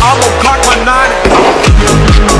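Background electronic music: the drum beat drops out, leaving a deep bass note sliding downward and wavering synth tones, and the beat comes back in near the end.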